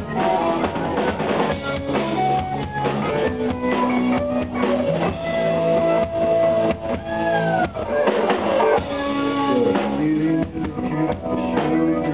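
Live rock band playing an instrumental passage: electric guitars and bass over a drum kit. A long held note bends down in pitch about seven seconds in.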